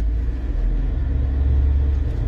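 Steady low rumble inside a car's cabin, the engine and road noise of the car under way.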